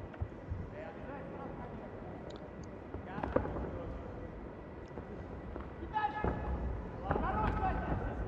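Broadcast arena sound from a taekwondo match: steady crowd noise with shouted voices, and a sharp thud about three seconds in.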